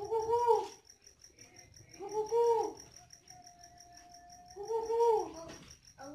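Spotted dove cooing: three rounded coos about two seconds apart, with a held note between the second and third. Insects chirp steadily and high-pitched behind them.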